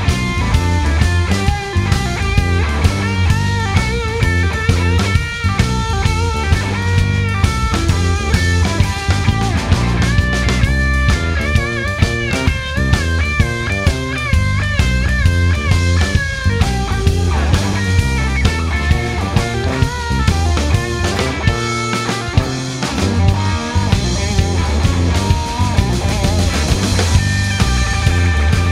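Live blues-rock trio of electric guitar, bass guitar and drum kit playing an instrumental passage: a steady drum beat and bass line under lead electric guitar lines, with wavering, bending notes in the middle.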